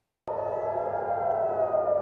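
Air-raid siren sounding: one sustained tone that slowly falls in pitch, cutting in abruptly about a quarter second in. It warns of incoming rocket fire.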